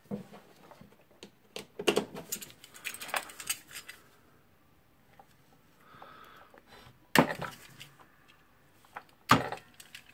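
Clicks, rattles and rustles of wires and small hand tools being handled on a wooden workbench as wire ends are prepared for splicing, with two sharp knocks, one about seven seconds in and one about two seconds later.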